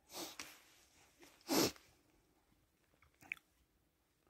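Close breathy sounds from a person by the microphone: a short breath at the start, a louder sharp sniff about one and a half seconds in, and a faint click a little after three seconds.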